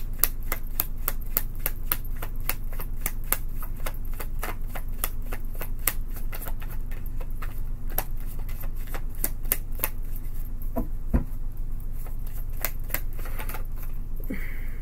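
Tarot deck being shuffled hand to hand: a steady run of sharp card clicks, several a second.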